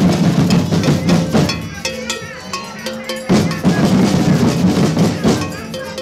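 A marching street percussion group playing snare drums and large rope-tensioned bass drums in a loud, driving rhythm. The beat thins out briefly about two and a half seconds in, then comes back in full.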